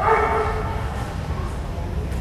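A dog barks once: one loud bark of about half a second right at the start, over a steady low rumble.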